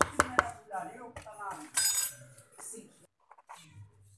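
A metal spoon knocking against a plastic mixing bowl: three quick sharp taps at the start, then a ringing clatter about two seconds in as the spoon is set down.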